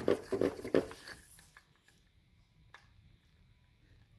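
Microfiber dust mitt rubbed quickly back and forth along window blind slats, several brisk strokes a second, stopping a little over a second in; a faint click follows later.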